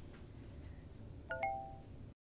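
Faint room tone, then a bright two-note chime: two quick strikes, the second higher, a little past a second in, ringing out for about half a second.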